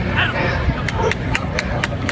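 Spectators' voices over a low rumble, with sharp claps a few times a second starting about a second in as a few people begin to clap.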